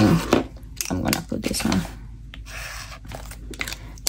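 Paper stickers being peeled and pressed onto a journal page: short crinkling, tearing and tapping sounds, with a few quiet mumbled words in between.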